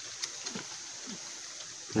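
A pause between voices: a steady faint outdoor hiss, high-pitched, with a couple of small clicks near the start.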